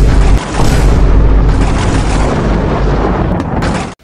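Cinematic boom sound effect for a logo intro: a loud, deep rumbling boom that holds for about four seconds and cuts off abruptly near the end.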